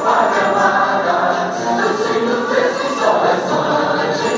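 Many voices singing together in a continuous choir-like chorus.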